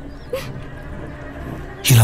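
A brief soft whimper and a short breathy sniff from a crying woman over a quiet background, then a man starts speaking loudly near the end.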